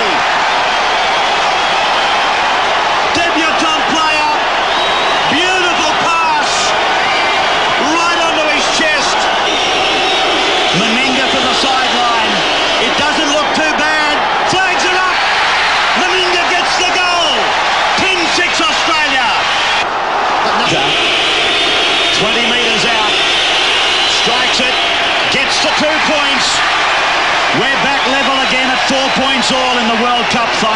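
Large stadium crowd, a steady loud din of many voices shouting and chanting at once.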